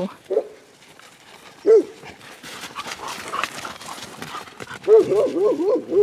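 Dogs and a wolf playing: short yelping barks a third of a second and just under two seconds in, then near the end a quick run of rising-and-falling calls that leads into a woman's laughter.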